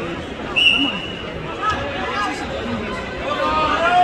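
Spectators' voices talking and shouting over general crowd chatter in a gym, with a brief high-pitched tone about half a second in.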